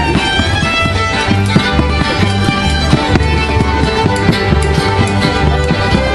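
Live acoustic string-band jam: an upright bass keeps a steady, repeating low beat under a lively string melody.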